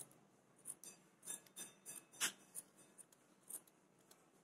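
Scissors snipping through wool yarn, trimming a yarn flower: about ten quick, faint snips at an uneven pace, roughly two or three a second, with one sharper cut a little past the middle.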